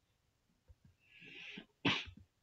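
A man sneezing once: a breathy intake, then one short, sharp burst near the end. A couple of faint mouse clicks come before it.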